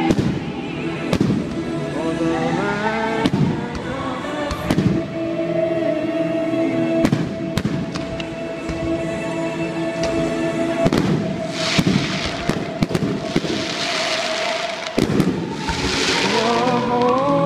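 Aerial firework shells bursting every second or two, with a thick crackling spell of shells about two-thirds of the way through, over music with sustained notes.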